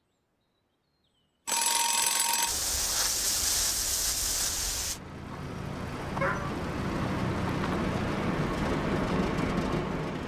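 An alarm clock goes off suddenly about a second and a half in, loud and ringing out of near silence, and carries on as a harsh, hissing clatter. It cuts off abruptly about halfway through and gives way to a low, steady rumble.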